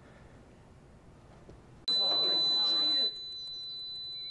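Near silence for about two seconds, then a steady high-pitched electronic beep tone cuts in suddenly and holds, louder for its first second.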